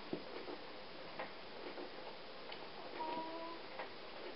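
A few faint, scattered clicks as hands lift and move yarn loops over the plastic pegs of a Knifty Knitter long loom, over a steady low hiss. A brief faint tone sounds about three seconds in.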